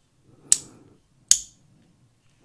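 Two sharp plastic clicks, about a second apart, as the moving parts of a 1/72 scale T-70 X-wing toy are snapped into position.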